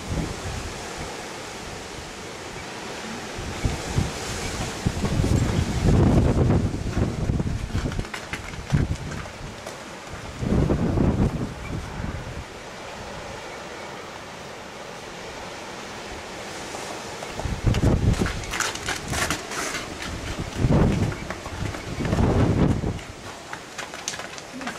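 Strong wind buffeting the microphone in repeated gusts, each a loud low rumble lasting one to three seconds over a steady rush of wind.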